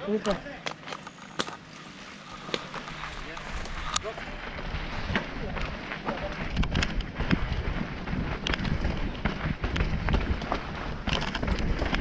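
Footfalls and scattered knocks from someone running down a dirt trail with a handheld phone, with wind rumbling on the microphone that grows stronger from a few seconds in.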